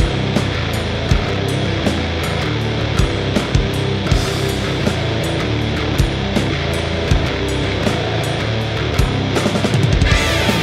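Instrumental section of a heavy metal song: distorted guitar and bass over drums, with no vocals.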